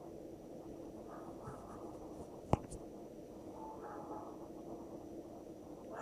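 Quiet room noise with a faint steady hum, broken by one sharp click about two and a half seconds in and a weaker one just after.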